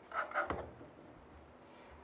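A short rustle of handling and a single light knock about half a second in, as the V100 graphics card and the fan's metal PCI bracket are picked up and brought together; otherwise quiet room tone.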